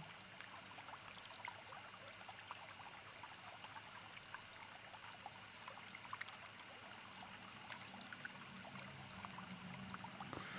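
Near silence: only the faint, steady rush of a flowing stream, with tiny scattered ticks.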